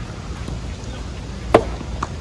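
A soft tennis racket strikes the hollow rubber ball once, about one and a half seconds in, with a sharp, briefly ringing pop. A fainter click follows near the end, over a steady low rumble.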